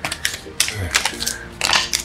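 Paper banknotes being handled and flicked through by hand, a run of short, sharp rustles and snaps.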